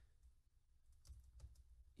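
Faint keystrokes on a computer keyboard over near silence, a scattered run of light taps in the second half.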